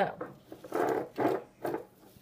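Loose salad greens and a plastic clamshell container rustling in three short bursts as the leaves are handled and stuffed into a mason jar.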